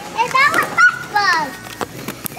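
A toddler's high-pitched babbling in two short bursts, with no clear words.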